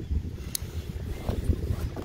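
Wind buffeting the microphone: an uneven low rumble, with a brief faint click about half a second in.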